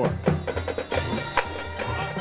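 Marching band playing, led by the drumline and pit percussion with a run of sharp drum and percussion hits and horns faint behind.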